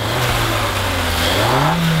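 Suzuki Vitara's 1.4-litre BoosterJet turbocharged four-cylinder engine running, its revs rising about one and a half seconds in and then holding at the higher pitch.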